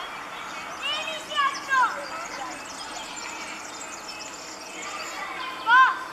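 European serin singing its high, fast, jingling song, with louder chirps about one to two seconds in and again near the end.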